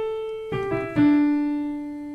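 Piano picking out a short melody one note at a time, a falling line of single notes that spells out a vocal run. The last and lowest note, about a second in, is struck hardest and left ringing.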